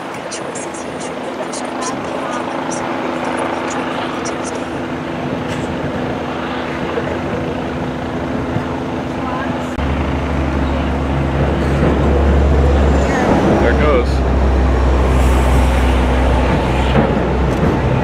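A steady low machinery hum with a few constant tones, joined about ten seconds in by a deep low rumble that grows louder, under faint voices.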